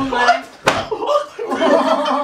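Several men laughing loudly, with one sharp impact about two-thirds of a second in as a scuffle breaks out.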